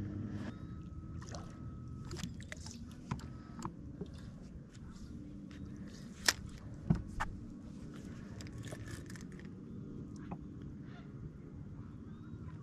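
Low steady hum of a bass boat's bow trolling motor, with scattered light clicks and knocks from rod and reel handling; the two sharpest clicks come about six and seven seconds in.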